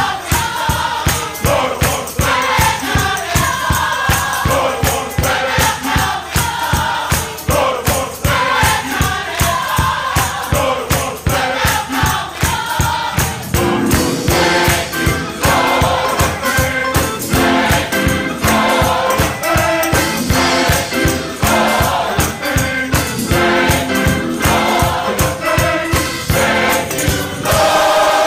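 Large gospel choir singing over a steady, quick percussive beat, with lower notes coming in about halfway through.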